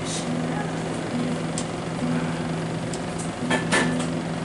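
Black acoustic guitar being tuned: a low string rings steadily while a second string is plucked about once a second against it, with a couple of sharp string or pick clicks near the end.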